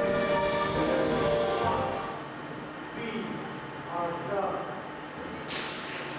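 Orchestral music dying away over the first two seconds, followed by a quieter stretch of voices, then applause breaking out suddenly near the end.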